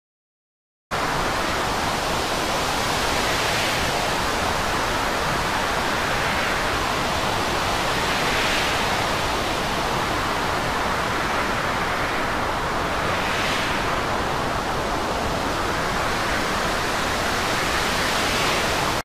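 Steady rushing noise of storm wind and heavy sea, swelling gently every few seconds; it starts abruptly about a second in.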